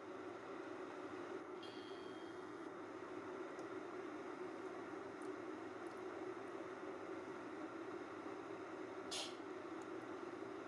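Steady low background hum, with a brief faint hiss about nine seconds in.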